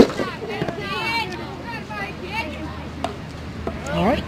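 Background voices of people at the ballfield, talking and calling in short bursts. There is a sharp, loud knock right at the start and a fainter click about three seconds in.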